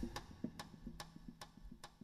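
Drum kit played very softly: light, sharp stick ticks, about two or three a second, over a faint low steady tone.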